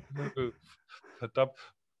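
Men laughing in short, broken bursts.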